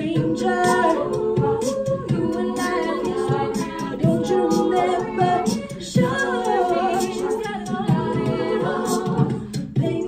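All-female a cappella group singing a pop mashup: two lead voices over layered backing vocals, with beatboxed vocal percussion keeping a steady beat.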